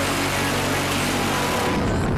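Phalanx CIWS 20 mm six-barrel rotary cannon firing one continuous burst, heard as a steady, even buzz that stops shortly before the end, with music underneath.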